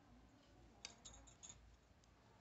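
Faint ticking of knitting needles touching as stitches are knitted: a quick run of about five light clicks in the second half.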